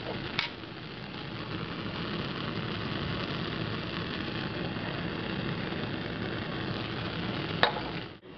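Bunsen burner gas flame hissing steadily, with two light clicks, one just after the start and one near the end.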